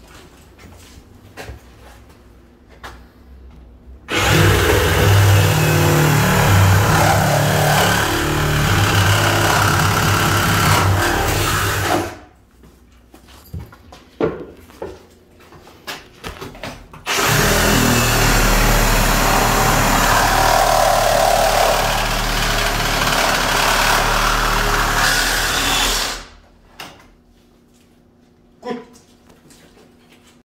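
Milwaukee M18 cordless reciprocating saw cutting into a door frame in two long runs of about eight and nine seconds, with a pause of small handling knocks between them.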